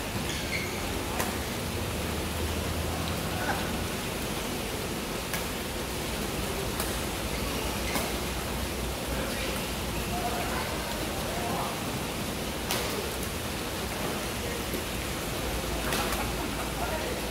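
Badminton rackets hitting a shuttlecock in rallies, about five sharp hits at uneven intervals, over a steady hiss of hall noise and distant voices.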